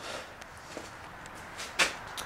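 Faint background noise, with one short, sharp scuffing noise near the end.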